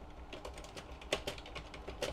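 Typing on a computer keyboard: a run of faint, irregular key clicks, several a second.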